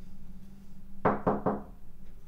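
Three quick knocks on a door, about a second in.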